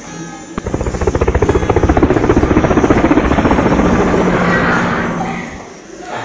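A loud, rapid fluttering pulse, like a drum roll, over background music. It starts about half a second in, swells, and fades away near the end.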